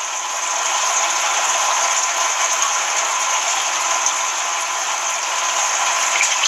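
Steady crackling, fizzing noise of aquarium water churned by hands and air bubbles rising in a glass tank.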